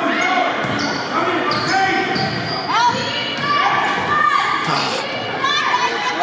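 A basketball being dribbled on a hardwood gym floor, with short high squeaks of sneakers on the wood, and voices echoing in a large gym.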